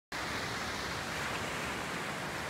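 Ocean surf breaking on the shore, a steady rush of waves.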